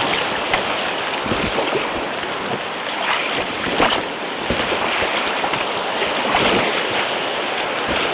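Whitewater rushing steadily around a kayak, heard close to the water from a camera on the boat, with a few sharper splashes against the hull and camera.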